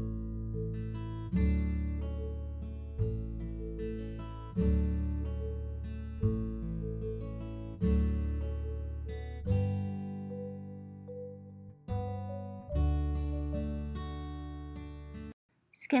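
Background music of plucked acoustic guitar, with a deep bass note about every second and a half under lighter picked notes. It cuts off suddenly just before the end.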